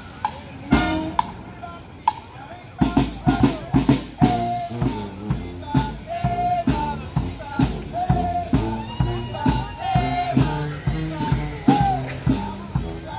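Small marching brass band playing: sousaphone, trumpets and a bass drum. A few drum strokes come first, then about three seconds in the full band plays a steady beat under a horn melody.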